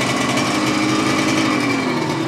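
Aprilia RS 250's two-stroke V-twin running steadily at idle just after starting, still cold. The engine is freshly rebuilt, with new Nikasil cylinders, crankshaft and pistons, and is still being run in.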